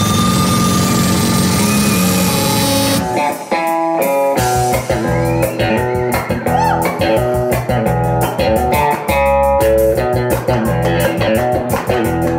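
Live electronic music built around electric guitar: a dense, noisy build with rising sweeps, which about three seconds in cuts to a choppy, stuttering electric-guitar groove over a steady bass beat.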